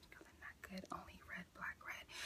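Faint whispering from a woman, in short broken fragments under her breath.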